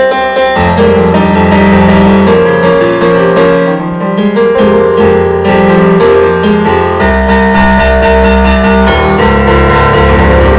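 Digital piano played in free improvisation: held chords over low bass notes that change every second or so, with a deeper bass coming in about seven seconds in.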